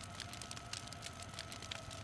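Low background hiss with a steady low hum and two faint steady tones, broken by a few scattered faint clicks.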